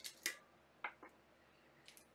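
A few faint, sharp clicks of a liquor bottle's screw cap being twisted and worked open by hand.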